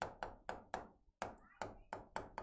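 Chalk tapping on a chalkboard while writing: a quick, irregular run of faint sharp taps, about seven in two seconds.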